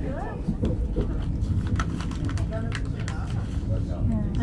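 Running noise inside a moving commuter train, a steady low rumble with scattered clicks, under brief snatches of people's voices.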